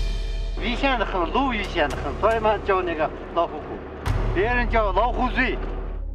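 A person's voice talking in two short runs, not in English, over background music with a low steady drone, with a short laugh near the end.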